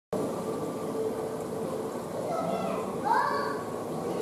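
Indistinct background chatter of people's voices, with a higher voice rising briefly about three seconds in.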